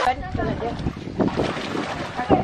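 Wind noise on the microphone over the slosh of floodwater as children wade through it, with short bits of voices.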